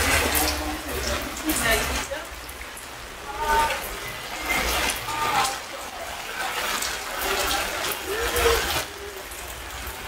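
Rain falling steadily, with scattered drops striking close by, and indistinct voices of a few people talking now and then.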